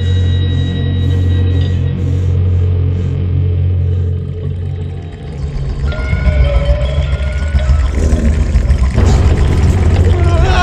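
Film soundtrack: a loud, deep droning rumble for the first four seconds, then from about six seconds a pulsing low beat with wavering higher tones that grows louder toward the end.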